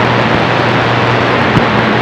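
CB radio speaker on receive, giving out steady loud hiss and static between voice transmissions, with a faint low hum underneath: band noise from skip conditions.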